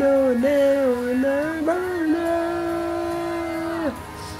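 A man singing a slow melody that settles into one long held note and stops just before the end.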